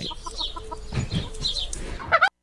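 Poultry clucking and calling in short repeated calls, played back from a recording, under a short laugh at the start.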